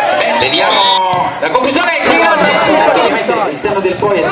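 Voices talking and calling over one another, with crowd chatter behind them.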